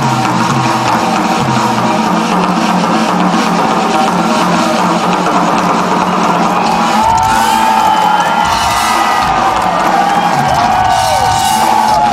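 Live drum kit solo with dense pounding bass drum and toms, which stops abruptly about seven seconds in. The crowd cheers and whoops after it stops.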